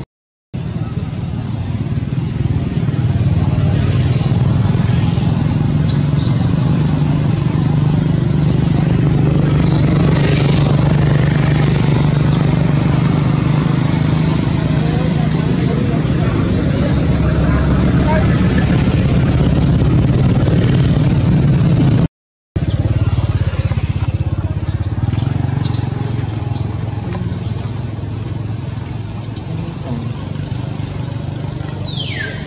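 A steady, low engine-like drone with people's voices and a few short bird chirps; it cuts out briefly twice.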